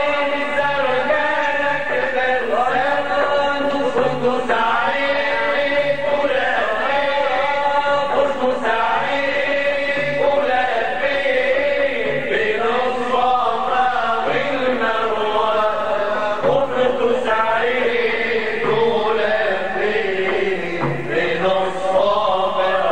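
Male voices chanting an Arabic religious song (inshad), with frame drums (daf) keeping a steady beat underneath.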